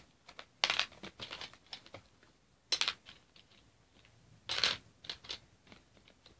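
Small plastic clicks and clatters of art supplies being handled in their case, with three louder rattles about a second, three seconds and four and a half seconds in.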